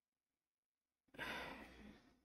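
A person's sigh: one long, breathy exhale that starts about a second in, after near silence, and tails off.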